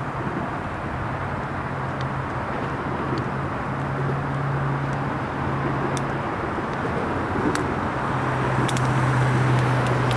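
Approaching freight train led by a BNSF EMD SD70MAC diesel-electric locomotive: a steady low engine drone over a rumble that slowly grows louder. The drone drops away for a couple of seconds about six seconds in, then returns.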